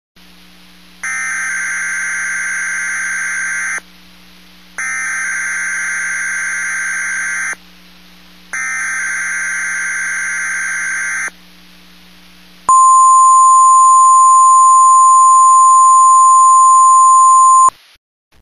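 Weather-radio emergency alert signal: three bursts of warbling digital data tones in the style of a SAME header, each about three seconds long with short gaps between them, then a steady single-pitched warning tone held for about five seconds that cuts off sharply.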